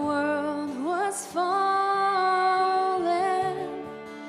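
A woman singing a slow worship song, rising into a long held note with vibrato a little over a second in, over soft band accompaniment.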